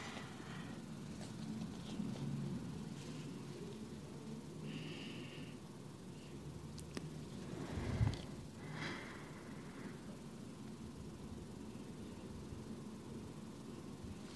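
Quiet room with soft breathing from a person holding a seated forward-fold stretch, with a slightly louder moment about eight seconds in.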